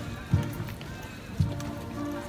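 Marching band music with a bass drum beating about once a second.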